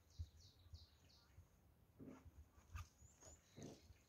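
Faint small-bird calls over near silence: a quick run of four short falling chirps in the first second, followed by a couple of soft brief scuffs.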